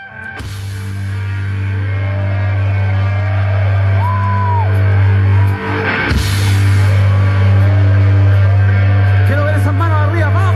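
Live rock band on stage, fading in: a loud sustained low bass drone with wavering, sliding guitar tones above it. There is a sharp hit about six seconds in.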